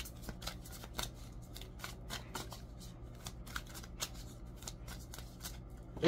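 A deck of oracle cards being shuffled by hand: a quiet, irregular run of soft card flicks and clicks.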